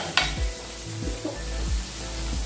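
Chopped onion and tomato sautéing in oil in an aluminium wok, a steady sizzle, with two sharp taps of metal on the pan right at the start. Background music plays underneath.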